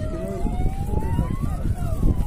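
A siren wailing, its pitch rising slowly to a peak near the end and then starting to fall, over the chatter of a large crowd.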